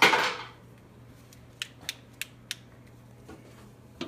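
A short rustling scrape at the start, then four light clicks about a third of a second apart, over a faint low hum.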